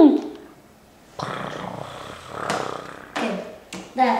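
A boy making motorbike engine noises with his mouth while astride a dirt bike: a pitched vroom dies away at the start, then a breathy, rumbling growl runs for about two seconds. A couple of short clicks follow near the end.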